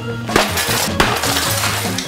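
A glass pane shattering under a heavy blow: a sharp strike about a third of a second in, a second crack about a second in, and shards crackling and clinking down after them. Background music plays underneath.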